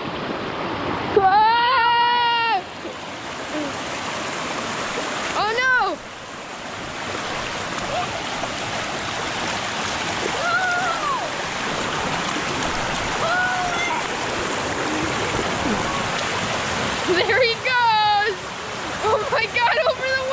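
Shallow creek water rushing steadily over a sloping rock slide, with splashing as an inflatable sled rides down it. A voice calls out several times in long, drawn-out cries over the water.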